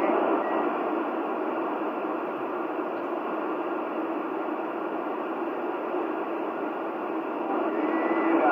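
Steady hiss of static from a CB radio's speaker on an open channel between transmissions, with no station talking; it swells slightly near the end.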